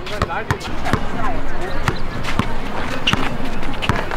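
Basketball dribbled on an outdoor court: a string of sharp, irregularly spaced bounces, with voices of players and onlookers calling out around it.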